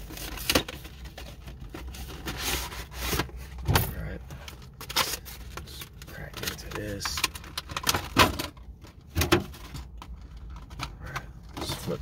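Cardboard collector's box and its packaging being handled and opened: a run of irregular clicks, taps and rustles.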